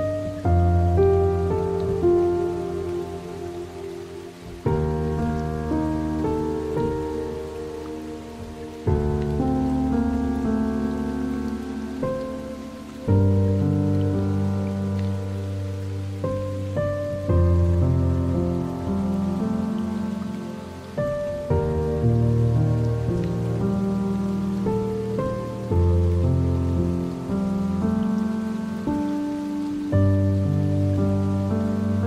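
Slow, dark piano music: a new low chord is struck about every four seconds and left to fade, over steady rain.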